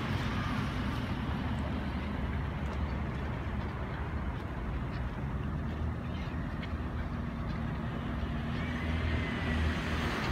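Steady low rumble of distant road traffic, with faint calls from a flock of black-tailed gulls over the river.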